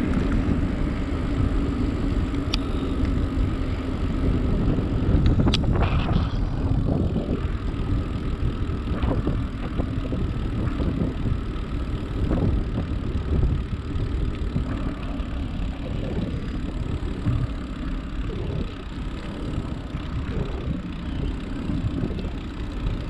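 Bicycle riding along a paved trail: a steady rumble of wind buffeting the microphone and tyres rolling on asphalt, with two brief sharp clicks in the first six seconds.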